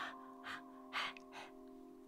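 Four short puffs of breath blown onto freshly painted nail polish, about half a second apart, over a steady held chord of background music.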